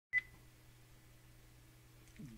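A single short electronic beep just after the start, followed by a faint steady low hum of room tone.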